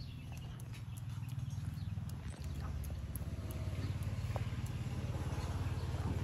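A macaque's fingers picking and parting through hair right by the microphone, making small crackling scratches and clicks, over a steady low rumble that grows louder about a second or two in.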